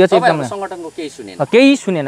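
Only speech: a man talking in Nepali, close to the microphone.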